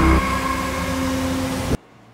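Background music: a sustained low drone with steady held tones that cuts off suddenly near the end.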